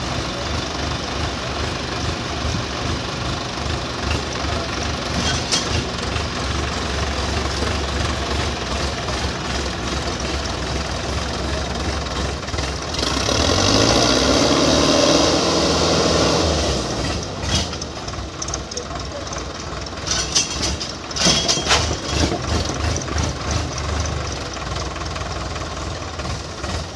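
Tractor diesel engines running at idle, then about halfway through one revs up loudly for three to four seconds before dropping back. Voices call out near the end.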